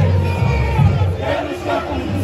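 Samba-school bateria playing, its surdo bass drums beating a steady rhythm, under a crowd cheering and shouting that grows louder about a second in.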